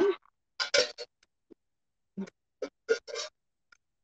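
Lid being fitted onto a small metal pot and closed: a handful of short metal clinks and scrapes spread over a few seconds.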